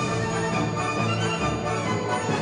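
Orchestral theme music, sustained chords held at a steady level, opening the show.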